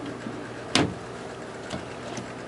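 Overhead wooden cabinet door in a motorhome knocking shut: one sharp click under a second in and a fainter tap near the end, over quiet room hiss.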